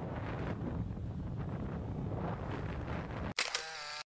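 Riding noise from a moving motorcycle: wind rushing over the microphone with the engine running underneath. A little past three seconds in, it cuts off abruptly and a brief wavering electronic tone takes over.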